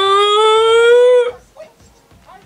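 A woman's long, loud, howl-like 'oooh' of shock, rising slowly in pitch and breaking off abruptly just over a second in.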